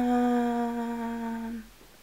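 A woman humming one long held note that sinks slightly in pitch and stops about one and a half seconds in.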